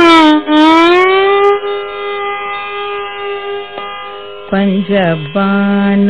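Carnatic classical music in raga Purvikalyani, from a vocal recital with violin: an ornamented melodic phrase with sliding gamakas settles onto one long held note that slowly fades. About four and a half seconds in, a lower line enters with a short bend and then holds steady.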